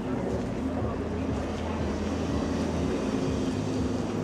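Electric trolley bus close by, a steady hum over a low drone, with street noise and passing voices.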